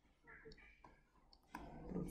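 A few faint, sharp clicks over near-quiet room tone, made while handwriting on screen with a mouse or pen. A louder sound comes in about three-quarters of the way through.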